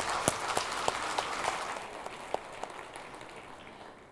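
Audience applauding, the clapping dying away over the few seconds.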